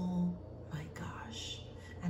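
A woman's voice speaking softly: a short voiced sound at the start, then quiet whispered, breathy sounds.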